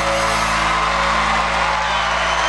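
A live country band's closing chord ringing out on electric guitars and bass, with the audience cheering over it.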